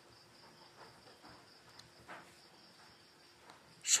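Faint steady chirring of crickets in the background, with a few soft scratches of a pen on paper. A man's voice starts just at the end.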